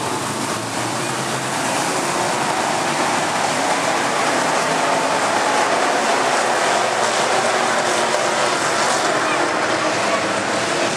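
Engines of a field of dirt-track modified race cars running together on the track as a dense, steady engine noise that grows slightly louder over the first few seconds.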